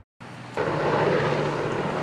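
A steady engine drone with a low hum under a noisy rush. It cuts in after a moment of silence and grows louder about half a second in.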